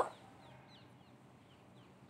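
Faint, short, high chirps of a bird in the background, each note sliding down in pitch, about three a second.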